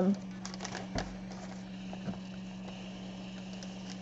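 Faint handling sounds of an old electric iron being slid over coffee-dyed paper on a cloth-covered counter: light rustling and clicks, a soft thump about a second in, and a faint hiss in the second half, over a steady low hum.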